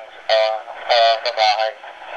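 A man's voice heard over a handheld two-way radio, thin and without bass, speaking a few short phrases for about a second and a half.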